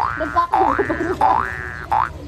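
A cartoon 'boing' sound effect, a springy wobbling pitch with a bright twang, repeated about every 0.7 seconds: three times in a row, with a fourth starting at the end.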